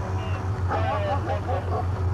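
Idling car engine, a steady low rumble, with voices heard briefly in the middle.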